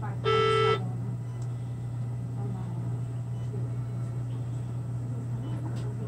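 A single electronic beep, one steady tone held for about half a second just after the start, over a steady low hum of equipment.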